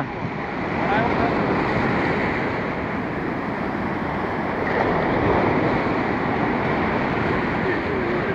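Ocean surf breaking and washing up a sandy beach: a steady rushing wash that swells slightly about five seconds in.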